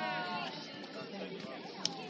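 Chatter of players' and spectators' voices, with a high-pitched call at the start that rises and then falls. A single sharp knock comes near the end.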